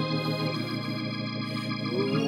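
Keyboard playing sustained organ chords, held steady, with the low note changing about half a second in.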